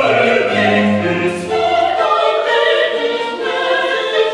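Mixed choir and chamber orchestra performing a slow passage of a classical Requiem with sustained notes. The low bass line drops out about halfway through, leaving the upper voices and strings.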